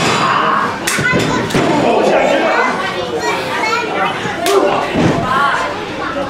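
Several thuds of wrestlers' bodies hitting the mat of a wrestling ring, about a second in and again near the end, over a small crowd shouting and cheering in a hall.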